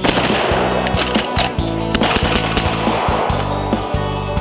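Gunshots with echo during a rifle-to-pistol transition: a carbine fires first, then a handgun, several sharp shots in all, the loudest right at the start and about two seconds in. Background music runs under the shots.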